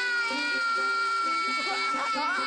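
A cartoon sheep's long, drawn-out crying wail: one high held note that sinks slowly in pitch, over light background music.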